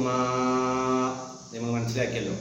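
A man's voice reciting in a drawn-out chant, holding one steady note for about a second, then a brief break and a second held note near the end.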